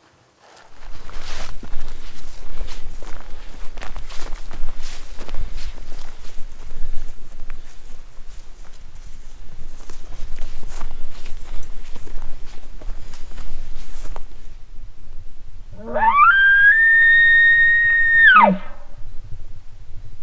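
Footsteps and pack rustling while hiking through brush, over a steady low rumble. Near the end, one loud elk bugle rises from a low note to a high whistle, holds for about two seconds, and drops away.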